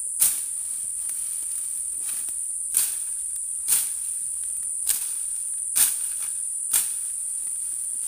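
A steady, high insect drone, broken by six sharp cracks at irregular intervals as dense resam fern (Dicranopteris) stems are trampled and snapped down.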